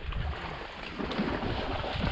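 Wind buffeting the microphone over irregular sloshing and rustling as someone moves through shallow marsh water and floating vegetation.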